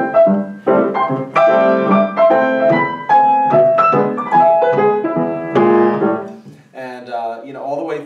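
Grand piano played in a stride style: low bass notes and chords under a swinging melody, the notes struck crisply. The playing stops about six and a half seconds in, and a man starts talking.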